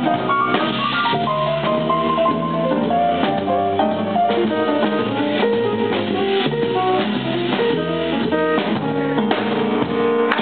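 Jazz quartet playing live: drum kit to the fore, with double bass and melodic lines above.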